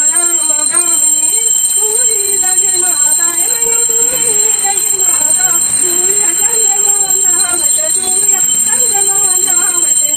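Voices singing a Hindu devotional prayer song in unison during a puja, in long held, gliding phrases. A steady high-pitched tone runs underneath throughout.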